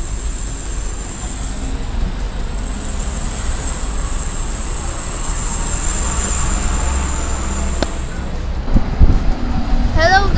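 Street traffic noise: a steady rumble of passing cars with a constant high hiss above it, and a couple of handling thumps near the end.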